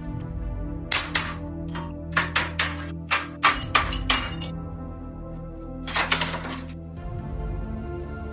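Sledgehammer striking a steel trailer frame: about fifteen sharp metallic blows in three quick clusters, over background music.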